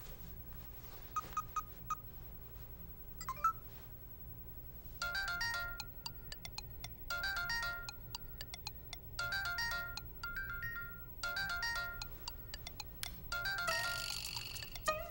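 A mobile phone's melodic ringtone: a short chiming phrase that starts about five seconds in and repeats roughly every two seconds. Before it come a few faint short beeps as the number is dialled.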